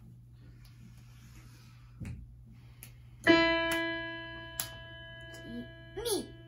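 A single note struck on a digital piano about three seconds in, ringing on and slowly fading. It is a test note to be named by ear. A soft knock comes a second or so before it.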